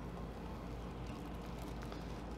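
Quiet room tone: a steady low hum with faint background noise and a couple of very faint ticks.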